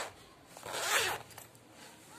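Zipper on a fabric purse being run along once: a single short rasp about half a second long, about a second in.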